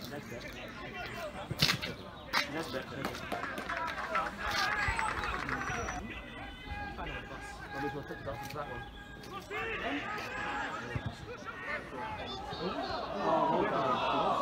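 Voices of footballers calling and shouting on the pitch through the whole stretch, loudest near the end. A sharp knock about one and a half seconds in, and a smaller one soon after, from the ball being kicked.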